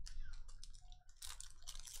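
Foil trading-card pack wrapper crinkling as it is handled and opened, a quick run of small crackles.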